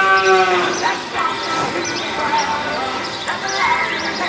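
Cattle bawling: one long, steady call at the start, with voices in the arena behind it.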